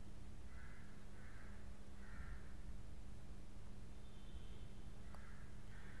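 Faint bird calls over a steady low hum: three calls about a second apart in the first two and a half seconds, then two more near the end.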